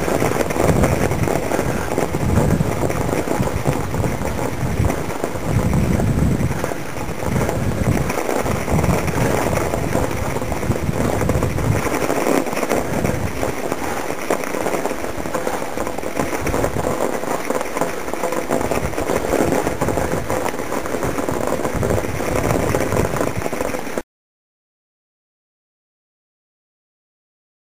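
Wind buffeting the microphone and riding noise from a mountain bike on a snowy trail: a steady rush with uneven low rumbles. It cuts off suddenly near the end.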